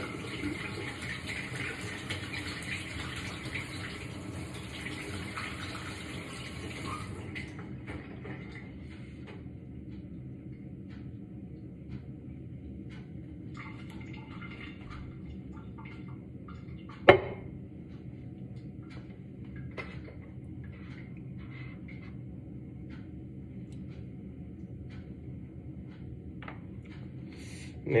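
Kitchen tap running for about seven seconds, then shut off. Afterwards come small scattered handling clicks over a faint steady hum, with one sharp knock about halfway through that is the loudest sound.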